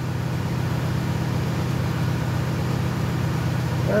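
Borehole drilling rig's engine running steadily, a low, even drone.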